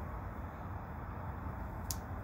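Steady low background noise with no clear source, and a single short click near the end.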